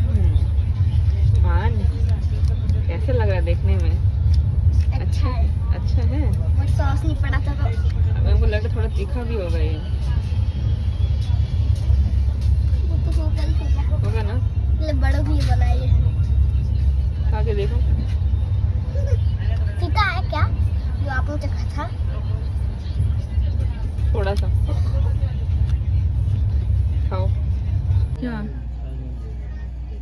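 Steady low rumble of a moving passenger train heard from inside the coach, with voices talking now and then over it. The rumble drops off sharply near the end.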